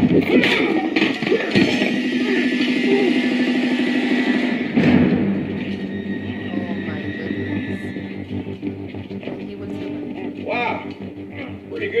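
Movie soundtrack playing: music with held tones for the first few seconds, then a man's voice speaking near the end.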